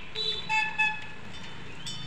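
A vehicle horn giving three quick beeps in the first second, over a steady low rumble of traffic or an engine.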